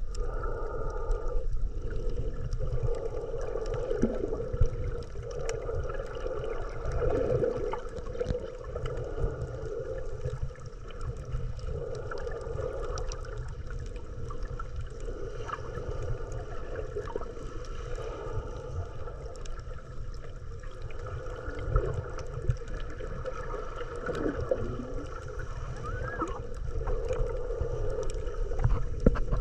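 Underwater ambience recorded by a GoPro just below the surface: a steady muffled rumble with wavering water gurgling and a few faint clicks.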